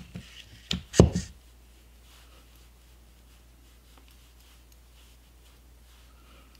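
A couple of short sharp taps about a second in, then faint soft rubbing of fingertips spreading liquid foundation over the skin of the cheek, in a quiet room.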